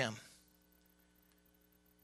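A man's spoken word trails off, then near silence with a faint steady electrical hum.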